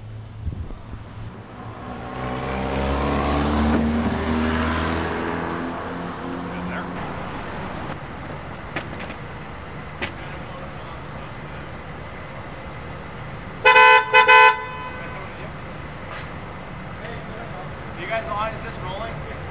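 A vehicle drives past, its engine and road noise swelling and then fading over a few seconds. Near the end a car horn gives two short toots, the loudest sound here.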